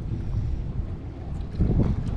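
Wind rumbling on the microphone, louder for the last half second or so.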